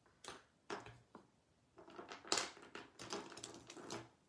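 Faint clicks and taps of art supplies being handled on a work table: a few separate light knocks in the first second, then a busier run of small clicks and rustling as a paintbrush is put down and a twin-tip marker picked up.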